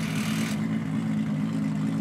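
A car engine idling steadily, an even low hum, with a brief hiss right at the start.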